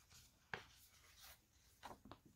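Faint rustle of a picture book's paper page being turned by gloved hands, with a sharper flick of paper about half a second in and a swish near the end.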